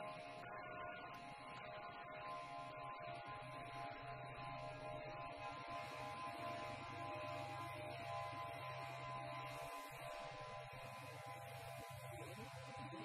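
Experimental live music for amplified Apple ImageWriter dot-matrix printers and synthesizers: a drone of several steady held tones, with a lower tone joining a few seconds in.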